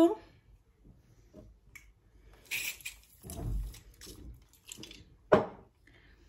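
Brief hiss of an Avène thermal spring water aerosol spray about two and a half seconds in, followed by a low handling knock. Near the end comes one short, sharp sound, the loudest in the stretch.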